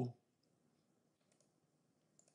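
A faint computer mouse click or two about midway through, over near-silent room tone.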